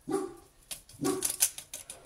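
A dog barking, two short barks about a second apart, with crisp rustling around the second bark.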